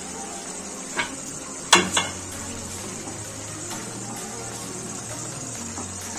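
Tomato gravy of potato and cauliflower bubbling and simmering in a kadai with a steady hiss. A wooden spatula knocks against the pan a few times, about one to two seconds in.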